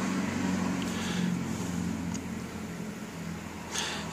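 Steady low hum of a car, heard from inside its cabin.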